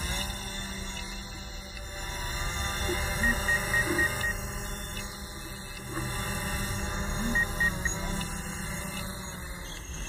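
DJI Mavic Pro quadcopter's propellers whining as it hovers low and descends to land, the pitch shifting slightly as it comes down. A run of about five short high beeps a few seconds in and three more later, typical of the low-battery warning during landing.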